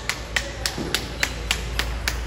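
Table tennis ball clicking sharply in a steady, even rhythm, about three to four a second, stopping at the end.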